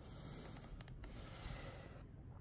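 A man breathing hard, out of breath after climbing several hundred steps up a steep hill: two long, faint breaths.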